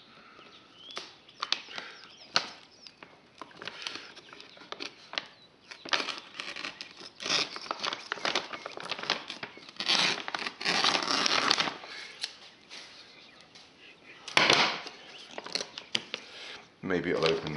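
A resealable plastic bag of plaster being handled and pulled open by hand: crinkling and tearing in irregular bursts with small sharp snaps, the longest stretch about ten seconds in and a short loud burst near the end.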